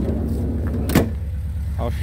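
1984 Volkswagen Transporter's engine idling steadily, with a single slam about a second in as a panel of the van is shut.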